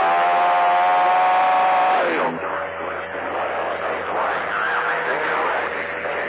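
CB radio skip reception on channel 28: a loud, drawn-out voiced call held for about two seconds. It is followed by weaker, garbled voices under a steady thin tone and static.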